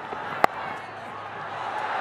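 Cricket bat striking the ball: a single sharp crack about half a second in. A stadium crowd's noise follows and swells toward the end.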